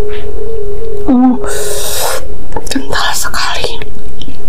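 Close-miked eating sounds. A held, hum-like tone ends in a wavering downward glide about a second in, then a loud wet slurp, and near the end more wet mouth and spoon-in-sauce noises.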